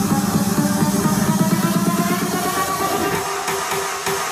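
Electronic dance music with a steady beat played loud through a 'the box' PA15 ECO MKII passive 15-inch full-range PA speaker. The deepest bass thins out near the end.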